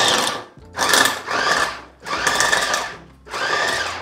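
Small electric food chopper with a glass bowl run in short pulses, its motor whirring in four bursts of about a second each with brief gaps, as it coarsely chops vegetables.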